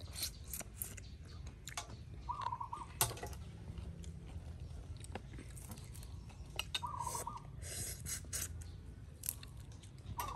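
Quiet eating sounds: soft chewing and small scattered crackles and clicks of fingers picking apart crisp fried fish. A short bird call sounds twice, a few seconds apart.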